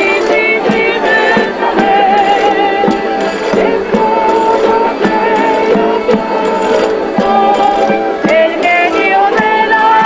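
Canarian folk group playing guitars and other plucked string instruments in a steady strummed rhythm, with voices singing a wavering melody over them.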